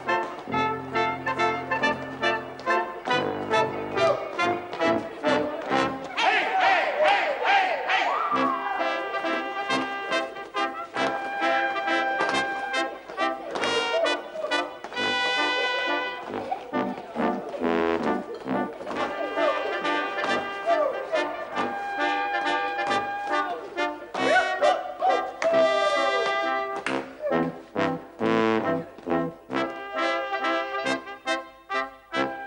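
Brass band playing lively dance music with trumpets and trombones over a fast, steady beat.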